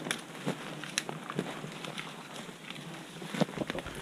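Footsteps on a forest floor, with twigs and brush crackling underfoot in irregular steps.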